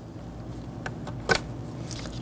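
Plastic vapor canister purge solenoid being worked up out of its port in the intake manifold by a gloved hand: faint handling rustle and small ticks, then one sharp click just past halfway as its rubber O-ring seal pops free.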